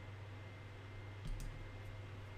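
Two faint computer mouse clicks in the second half, about half a second apart, over a low steady hum.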